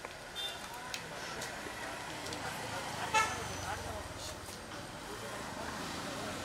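Street ambience: people talking in the background and road traffic going by, with a brief vehicle horn toot about three seconds in, the loudest sound.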